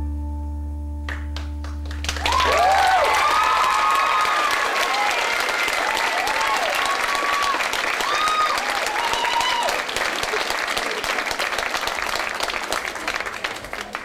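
The last low piano chord of the dance music rings out and fades. About two seconds in, the audience breaks into applause with whoops and cheers. The applause thins out near the end.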